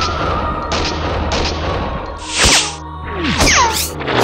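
Film soundtrack: music over a steady low drone and a held high tone, cut with gunfight sound effects. A loud shot comes just past halfway, and a falling whistle of a bullet flying past comes near the end.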